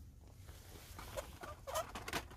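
Die-cast toy cars in plastic blister packs on card backings being rustled and knocked together as a hand digs through a cardboard store display bin. Two short squeaks come about a second in and near the end, the second the loudest.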